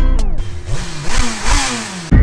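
Beat music cuts out in a falling sweep, giving way to a motorcycle engine being revved, its pitch rising and falling with each throttle blip, over exhaust and wind noise.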